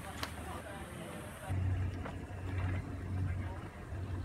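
Faint voices, then a steady low motor hum that starts suddenly just over a third of the way in.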